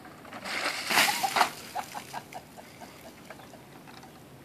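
A bucket of ice water dumped over a person's head, the water rushing and splashing down over him onto the grass, loudest about a second in, then trailing off into a scatter of small ticks and drips.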